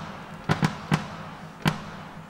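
Scattered single drum hits from a drum kit being checked: four sharp strikes at uneven intervals, two close together near the start and one alone later.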